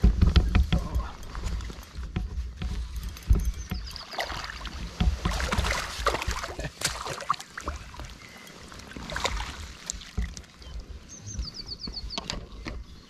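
A hooked chub splashing and thrashing at the surface beside an inflatable belly boat as it is played on a spinning rod and drawn into the landing net, with water sloshing around the boat in irregular bursts.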